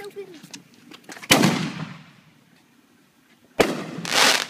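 Fireworks exploding: two loud bangs about two seconds apart. The first, about a second in, dies away over most of a second; the second is sharp and comes near the end.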